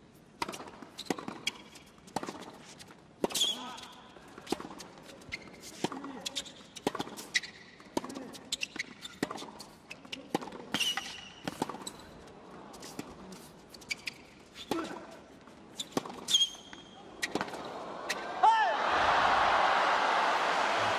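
Tennis rally on a hard court: racket strikes on the ball and its bounces, about one a second, with a few short high squeaks. The rally ends and crowd applause rises near the end.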